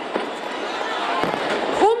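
Noise of a large outdoor crowd with firecrackers crackling and popping in a steady dense spatter, a few sharper pops standing out.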